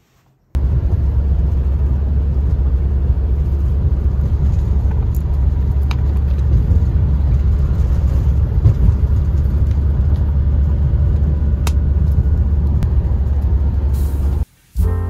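Steady low rumble of vehicle cabin noise inside a van, starting suddenly about half a second in, with a few faint clicks.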